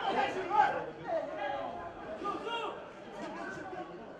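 Several men's voices calling out and talking in short bursts, loudest in the first second, over faint open-stadium background.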